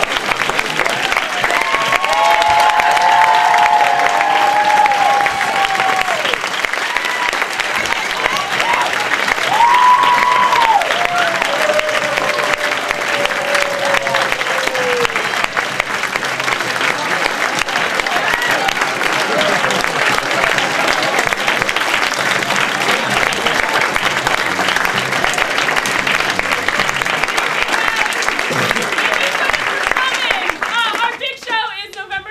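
Audience applauding steadily, with a few long, falling cheering calls rising above the clapping in the first half.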